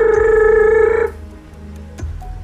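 A man's voice holding one high, steady note that cuts off about a second in, a vocal imitation of a phone ringing.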